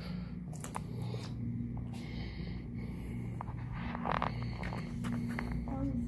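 Footsteps and camera-handling noise: scattered light clicks and scuffs over a low, steady background rumble.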